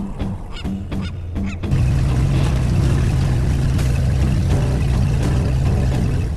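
A fishing boat's horn sounding one long, steady, low blast that starts about two seconds in.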